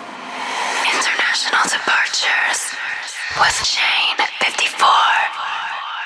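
Closing radio-show jingle: a whispered, heavily processed voice with swooping effects, its last sound repeating in a fading echo near the end.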